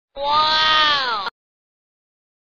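A single drawn-out animal-like call, about a second long, holding its pitch and then sliding down before it cuts off abruptly.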